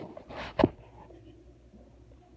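Phone handling noise as the camera is moved against skin and clothing: a brief rustle, then a sharp knock a little over half a second in, followed by a low steady hum.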